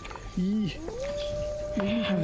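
Eerie wailing from a horror film's soundtrack: a short wavering moan, then from about a second in a long, steady high-pitched wail.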